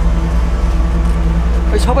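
A steady low hum, with a man's voice starting to speak near the end.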